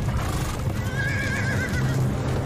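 A horse whinnies once, a wavering high call in the second half, over the clatter of horses' hooves, from a TV drama's soundtrack.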